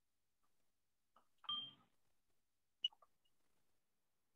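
Near silence on a video-call audio feed, broken by one short beep-like tone about a second and a half in and a sharp click a little before three seconds.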